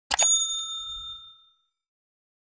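Subscribe-button animation sound effect: a quick double click, then a small bell ding that rings out and fades over about a second and a half.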